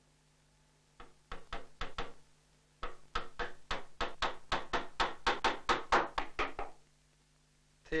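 Hammer blows driving a wedge up into the end of a wooden chair's back bow where it passes through the seat, fixing the bow to the seat. A few lighter taps come first, then a rapid run of about five blows a second that grows louder and stops just before the end.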